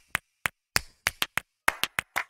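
Scattered hand claps, sharp and separate with silence between them, about four a second at an uneven pace.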